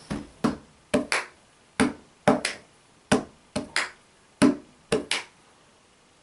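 The unaccompanied percussion part of an a cappella arrangement: short, sharp hits in a repeating rhythm, a single hit followed by a quick pair about a fifth of a second apart, the figure coming round roughly every 1.3 seconds.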